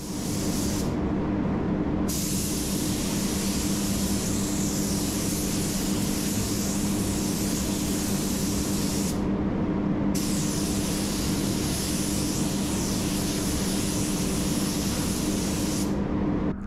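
Gravity-feed air spray gun hissing as it sprays automotive clear coat onto sanded headlight lenses, with two brief breaks in the hiss, about a second in and about nine seconds in, when the trigger is let off. A steady low hum runs underneath throughout.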